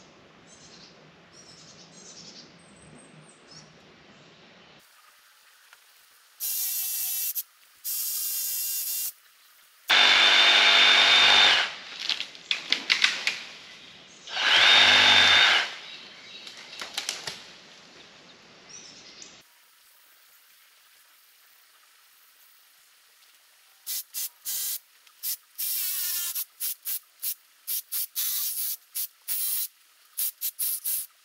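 A handheld power saw cutting a tree branch in several bursts, with a whine in each run, and the branch crackling down through leaves between the cuts. Towards the end the saw runs in many short stop-start bursts. Birds chirp faintly at first.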